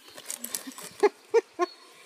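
A woman's short laugh: three quick pitched 'ha' syllables starting about a second in, over light clicking and rustling of pens and plastic being handled in a pencil case.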